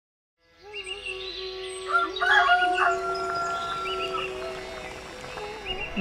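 A rural morning soundscape fading in: a rooster crows about two seconds in, several short notes then a long held one, over scattered chirping of other birds and a steady low tone.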